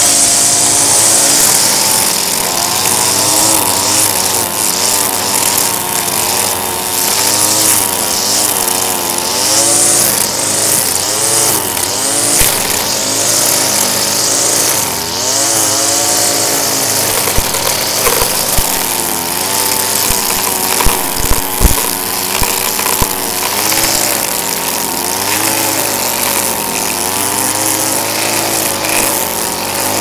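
Gas string trimmer running, its engine pitch rising and falling over and over as the throttle is worked while the line cuts grass, over a steady high hiss. A run of sharp ticks comes about two-thirds of the way through, as the line hits the pavement edge.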